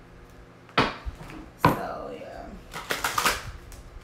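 A deck of oracle cards being shuffled by hand, the cards slapping and clattering against each other: two sharp slaps about a second apart, then a quick rattle of cards near the end.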